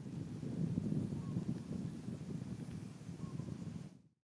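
Wind buffeting the microphone: an uneven low rumble that cuts off at the very end.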